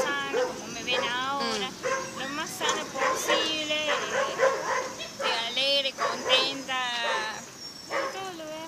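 A woman talking into a hand-held recorder close to her mouth.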